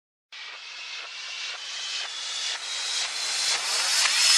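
Electronic music intro riser: a hissing noise sweep that grows steadily louder, building up to the beat.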